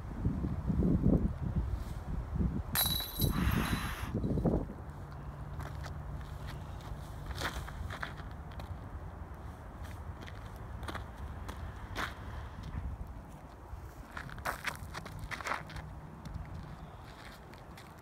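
Wind buffeting the microphone, with a brief metallic jingle about three seconds in, fitting a putted disc hitting the chains of a disc golf basket. Then quieter open-air ambience with scattered footsteps and a faint steady low hum.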